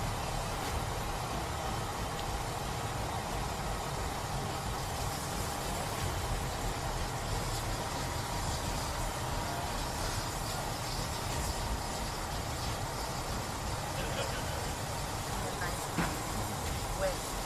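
Steady low rumble of engines running, with a hiss over it and faint voices now and then.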